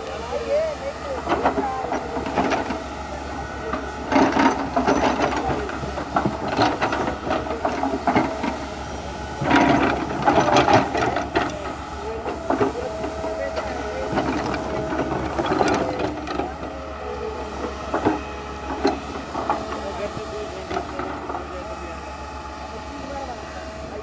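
Hydraulic excavator at work: its engine runs with a steady low hum while the bucket scrapes and clatters through soil and stones. The clatter comes in irregular bursts, loudest about four seconds in and again around ten seconds in.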